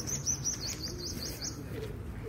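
A bird calling a quick run of high, repeated chirps, about five a second, stopping shortly before the end.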